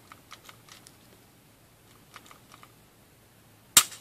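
Faint clicks from an empty SIG Sauer SP2022 pistol being handled, then one sharp click near the end as the hammer falls on a single-action dry-fire trigger pull.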